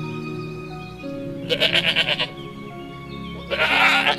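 A sheep bleating twice over background music: a wavering bleat about a second and a half in, then a shorter one near the end.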